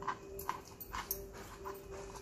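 Fingers squishing and pressing soft, half-cooked spiny gourd pulp on a wooden cutting board: a run of faint, soft squelches and clicks about twice a second. A faint steady tone runs underneath and drops out now and then.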